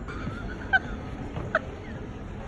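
Two short, high squeaks less than a second apart: rubber-soled trainers squeaking on a polished wooden shop floor during dance steps.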